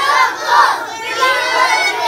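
A group of young children shouting a cheer together in unison, their voices drawn out and overlapping.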